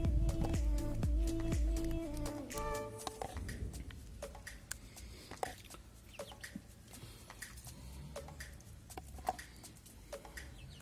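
Background music with a steady low beat that fades out about three seconds in. Hens then cluck now and then in the background.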